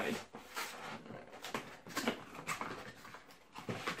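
Small cardboard box handled and opened by hand: irregular scraping, rustling and tapping of the cardboard flaps and sides.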